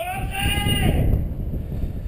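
A bungee jumper's single high-pitched, held cry, about a second long, over low rumbling wind noise on a body-worn camera's microphone as he hangs upside down and swings on the cord.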